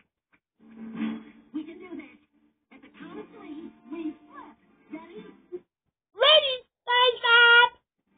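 A television cartoon soundtrack plays faintly with music and voices, then a loud, high voice sings or wails two wavering phrases with sliding pitch near the end.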